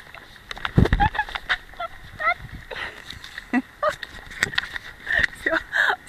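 Camera handling noise and knocks as carried items slip and are grabbed, with a heavy thump about a second in and a few sharp clicks later.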